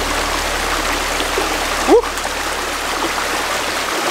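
Small mountain stream running over rocky cascades and little waterfalls, a steady wash of water.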